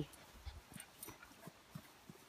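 A pug dog making a few faint, short sounds spread over about two seconds.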